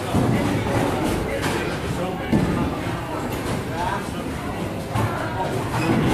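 Bowling alley din: indistinct talk and background music over a steady clatter of balls and pins, with a louder knock a little over two seconds in.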